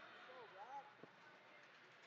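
Near silence: faint hall ambience, with a brief wavering tone that rises and falls twice about half a second in, and a single soft knock about a second in.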